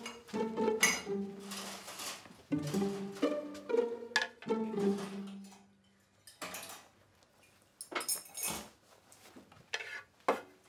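Light, playful pizzicato string music of short plucked notes that fades out about halfway through. After that come scattered short clinks and clatters, like a plate being handled.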